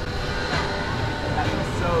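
Large wheeled misting fan blowing hard close by: a steady rush of air with an uneven low rumble as its airflow hits the microphone.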